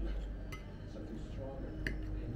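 Metal cutlery clinking against plates during a meal: two short sharp clinks, one about half a second in and a louder one near the end.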